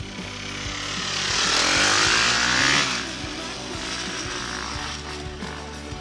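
Two enduro dirt bikes riding past close by. Their engine noise swells over the first two seconds, the note drops as they go by, and it cuts away about three seconds in. Background music runs underneath throughout.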